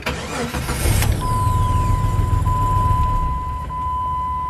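A car engine cranks and starts straight away, then runs steadily with a low rumble, while a high whine falls away over the first couple of seconds. A steady high-pitched beep comes in about a second in and keeps on.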